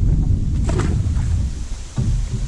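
Wind buffeting the microphone, a steady low rumble, with one short splash under a second in as a released bream drops back into the river.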